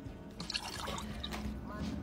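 Water from a mug splashing and dripping as it is tipped over a face, quietly, with a few soft splashes about half a second in and again later. Faint background music runs underneath.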